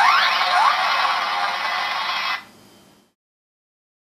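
Electronic sound effect from the Transformers Animated Ultra Magnus toy's main launchers, set off by a push button: a harsh electronic noise with sweeping tones near the start. It cuts off about two and a half seconds in and fades out soon after.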